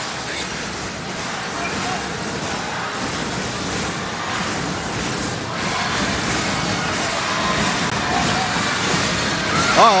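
Basketball arena crowd cheering, a steady roar of many voices that grows a little louder about halfway through.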